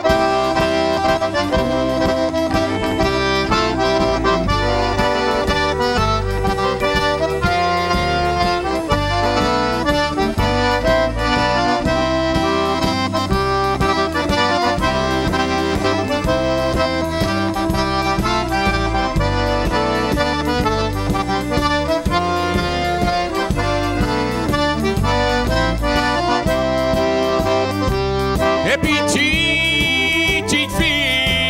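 Cajun band playing an instrumental passage led by a Cajun button accordion, with fiddle and a steady drum beat underneath.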